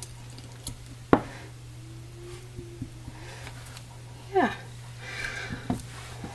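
A single sharp tap about a second in as the acrylic soap stamp is pressed onto a soft bar of castile soap, then soft handling rustle, over a steady low hum.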